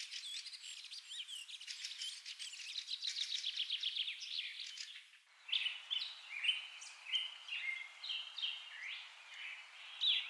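Birds chirping and singing, with a rapid trill of repeated notes in the first half. About five seconds in the sound drops out briefly and comes back as a different run of short chirps.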